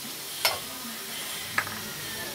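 Vegetables frying in a metal wok, sizzling steadily, with two sharp clinks of a utensil against the pan, about half a second in and again near the end.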